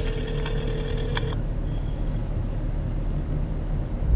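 Car engine idling with a steady low rumble in the cabin. A phone ringback tone, one held buzzing tone, sounds through the phone and stops about a second and a half in.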